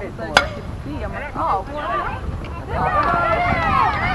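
A softball bat striking a pitched ball: one sharp crack about half a second in. It is followed by many high voices of spectators and players shouting and cheering, which grow louder near the end.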